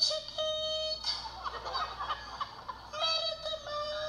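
A woman's voice wailing in a high, sing-song lament, holding long, steady notes at the start and again near the end, with a rougher, broken stretch in between.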